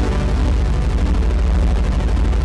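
Roland JU-06 Boutique synthesizer module (an emulation of the Juno-106) holding a steady note with its sub-oscillator turned up, adding a heavy low tone an octave beneath.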